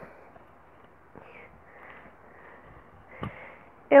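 Faint rustling of a cotton button-down shirt being handled and wrapped around the waist, with a short tap about three seconds in.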